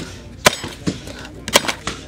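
An axe chopping into a wooden block in an underhand chop: two loud strikes about a second apart, with a few lighter knocks.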